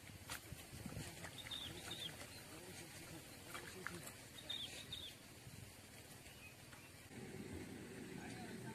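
Faint outdoor ambience with two short bursts of high chirping calls from a small bird, about two seconds in and again about four seconds in, and a few light clicks. A low murmur of voices begins near the end.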